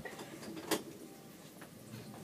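Bathroom doorknob being turned and worked, with a sharp click about three-quarters of a second in and a fainter one later: the latch is stuck and will not let the door open.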